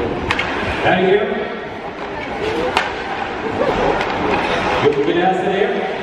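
Indistinct talk of people in the stands, echoing in a large ice hockey arena, with a few sharp clacks of hockey sticks and puck, two of them standing out early and near the middle.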